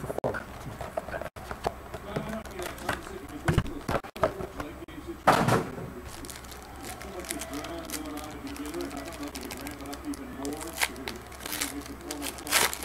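Hands tearing open and crinkling a foil trading-card pack, with scattered small clicks and rustles and one louder crackle about five seconds in.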